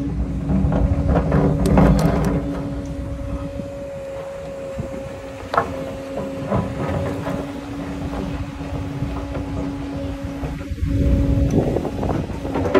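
Volvo EC220EL tracked excavator running steadily as it digs a trench, its engine rumble carrying a steady whine. Over it come knocks and scrapes of the steel bucket in the soil, clustered in the first couple of seconds and single ones about five and a half and six and a half seconds in.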